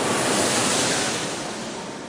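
A long rushing whoosh sound effect, an even wash of noise that fades away over the second half.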